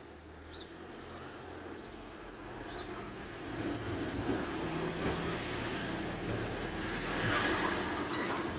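Street ambience of road traffic: a steady engine hum and rumble that grows somewhat louder in the second half, with a couple of faint high chirps early on.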